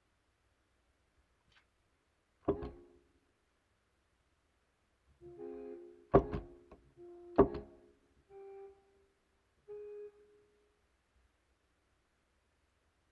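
Sibelius notation-software playback of a few bars of a jazz arrangement, in sampled instrument sounds. A single chord sounds about two and a half seconds in. After a pause comes a short run of chords with two sharp accented hits, then two brief single notes.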